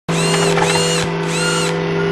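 Sound effects for an animated mechanical lens opening: a steady electric hum under three short servo-like whirs, each rising and then falling in pitch.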